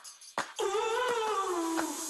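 A few sharp taps of hard-soled shoes on a tiled floor, then one long, slightly wavering tone lasting over a second.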